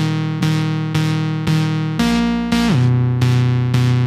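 Instrumental background music, keyboard-like notes struck about twice a second in a steady melody.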